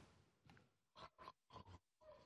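Near silence, broken by a few faint, short throat sounds from tasters gargling a mouthful of olive oil to judge its bitterness.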